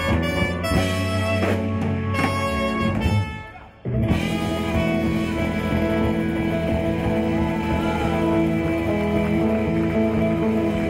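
Live band of electric guitars, bass, drums and keyboards playing the end of a song. The playing stops suddenly about three seconds in, then the whole band comes back in on a long held final chord.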